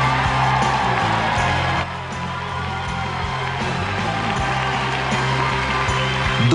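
Live pop-rock band playing an instrumental stretch of the song without vocals, with steady held notes over bass and drums; the band gets a little quieter about two seconds in.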